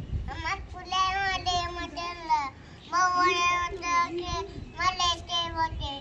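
A small girl's high voice chanting unintelligible words in a sing-song, several drawn-out phrases with a short break a little before the middle.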